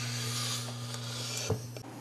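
A vivarium's sliding glass door rubbing and scraping along its track as it is slid shut, ending in a single knock about one and a half seconds in, over a steady low electrical hum.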